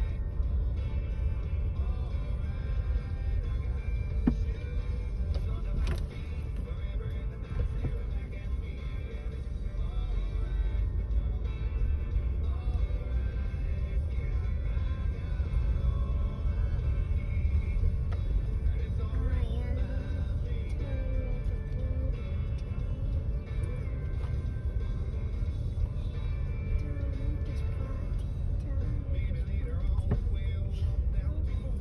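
Low steady rumble of a car in motion, heard from inside the cabin, with music playing over it.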